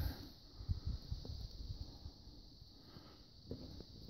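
Faint outdoor ambience: light wind on the microphone in soft, irregular low rumbles, under a steady high-pitched hiss.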